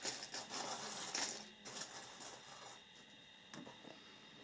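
A handful of small metal charms clinking and rattling together as they are stirred by hand, a dense run of light clicks that dies away about three quarters of the way in.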